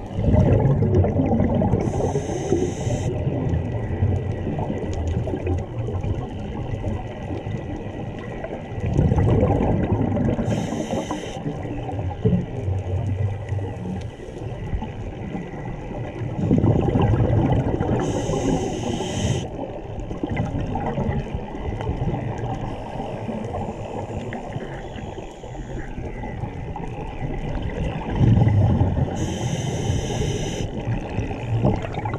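Scuba breathing through a regulator underwater: four breaths, about every eight to nine seconds, each a swell of exhaled bubbles rumbling and gurgling with a short high hiss from the regulator.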